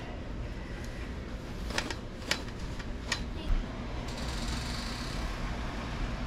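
Laundry being handled and pulled off a metal folding drying rack: a few sharp clicks and clinks in the middle, then fabric rustling near the end, over a steady low room hum.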